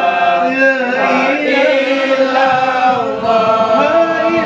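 A group of men chanting a Malay selawat in unison, the voices holding and sliding between long sustained notes. About two and a half seconds in, the rapid strokes of hand-beaten kompang frame drums come in under the singing.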